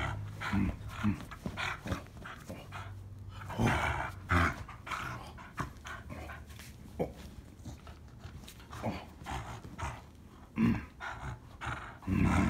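Dog growling in play while tugging and shaking a rope toy: one long low growl over the first few seconds, then short, irregular growls and huffs.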